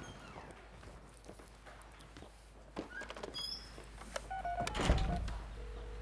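A wooden office door shutting with a single heavy thunk about five seconds in, after a few soft knocks. Short beeping tones come just before it, and a steady tone near the end.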